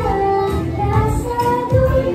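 Loud amplified live pop music with a young girl's voice singing over a heavy bass.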